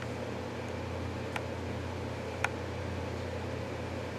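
Steady low hum of room background noise, with two short sharp clicks, one about a second and a half in and one about two and a half seconds in.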